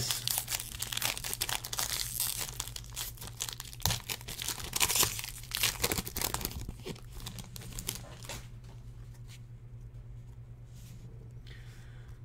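A foil-wrapped trading-card pack being torn open and crinkled by hand. The crackling is dense for about the first seven seconds, then gives way to quieter handling with a few light clicks.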